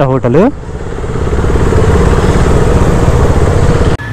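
Motorcycle engine running under way, a steady low rumble mixed with wind noise that grows louder over the first couple of seconds and then holds steady until it cuts off abruptly at the end.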